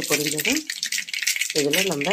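Hot oil spluttering in an iron kadai on the stove: a dense, rapid crackle that runs on steadily while a woman's voice talks over it.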